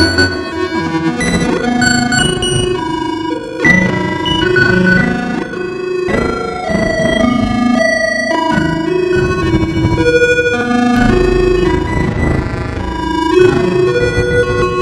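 Eurorack modular synthesizer patch playing a stepping sequence of quantised notes in several voices at once, each note lasting a fraction of a second to about a second. A deep bass note sounds under it from about eleven to thirteen seconds in.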